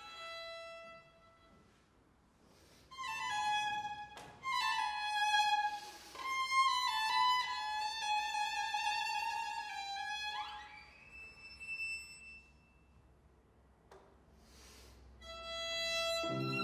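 Solo violin playing an unaccompanied passage in short phrases broken by pauses, with a quick upward slide to a held high note about ten seconds in.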